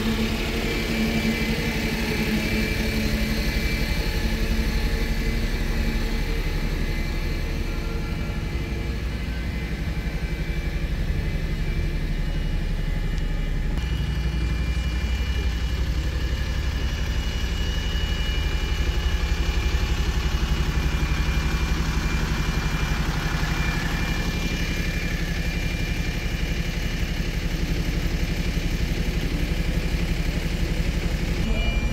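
City bus engines idling, a steady low rumble that grows louder about halfway through.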